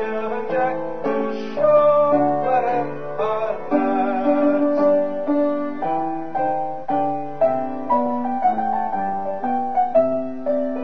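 Piano playing an instrumental passage of a song, a melody over chords with a new note about every half second.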